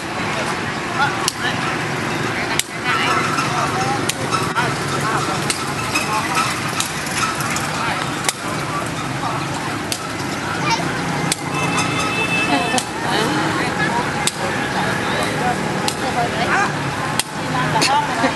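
Street ambience of steady traffic and motorbikes, with people's voices talking. Sharp taps every few seconds as a hacky sack is kicked between the players.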